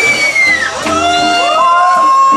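Live electric blues band playing: a lead electric guitar holds a long high bent note that bends down and drops away partway through, then a new sustained note with vibrato comes in near the end, over the band's bass and rhythm.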